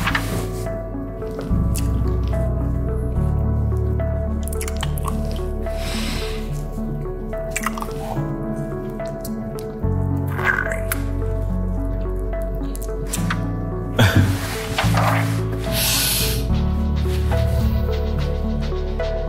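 Background music with slowly changing held low notes, over wet kissing and lip-smacking sounds that come a few times, the sharpest around two-thirds of the way through.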